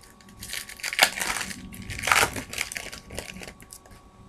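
Baseball card pack wrapper and cards being handled, crinkling and rustling in a few uneven spells, loudest about one and two seconds in.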